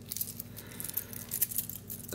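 Stainless steel bracelet links of a Seiko 5 wristwatch clinking lightly as the watch is turned over in the hands, a quick scatter of small metallic clicks.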